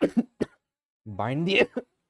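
A person coughing in three short bursts, then a brief voiced sound about a second later.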